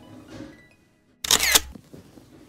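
A hardbound book being shut: a short, loud rustle of paper and cover about a second and a quarter in.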